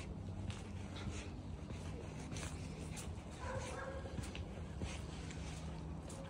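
Footsteps on a paved path over a low steady rumble, with a brief pitched animal call about three and a half seconds in.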